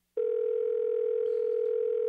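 Telephone ringback tone: one steady ring of a low, slightly wavering tone lasting about two seconds. It is the sign that the dialled number is ringing at the other end and has not yet been answered.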